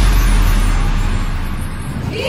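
A large crowd in an open-air stadium making a loud, even roar of noise with a heavy low rumble, easing off a little over the two seconds, just after the show music stops.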